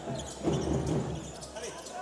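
Live basketball game sound in an arena: steady crowd noise and voices, with a basketball bouncing on the hardwood court.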